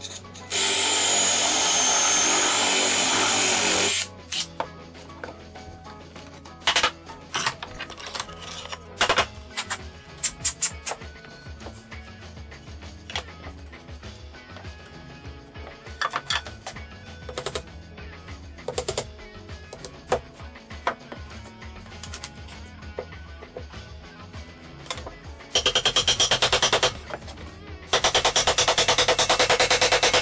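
A cordless drill bores a dowel hole into a wooden board through a metal doweling jig's guide bushing, running steadily for about three and a half seconds. Scattered light knocks and clicks follow, and near the end come two loud bursts of fast, even rattling.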